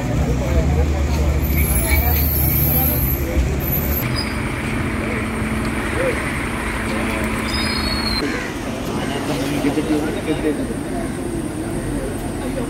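Heavy lorry engine running with a low rumble that is strongest for about the first four seconds, then drops to a quieter hum, with men talking in the background.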